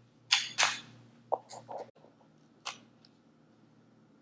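Small plastic lab-kit pieces handled on a stone countertop: a few sharp plastic clicks and knocks, the two loudest close together near the start, a quick cluster around a second and a half, and a last click near three seconds. A plastic magnifying glass is set down and test tubes are capped with snap-on plastic tops.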